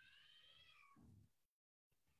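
Near silence: a very faint, high, wavering tone during the first second, then a brief drop to total silence shortly before the end.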